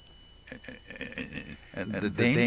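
A man's quiet, halting speech: a soft pause, then low muttering about half a second in, before louder talk resumes at the very end. A faint steady high-pitched whine sits underneath.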